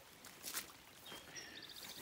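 Faint bird calls in the background, ending in a quick high trill near the end. A brief knock sounds about half a second in.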